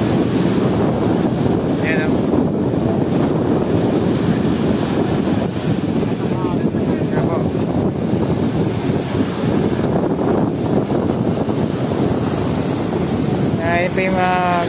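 Rough surf breaking and washing up the shore, mixed with strong wind rumble on the microphone. It is a loud, steady rush with no pauses.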